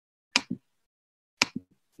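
Three short clicks from a computer's mouse or trackpad: two close together about a third of a second in, and one more about a second and a half in.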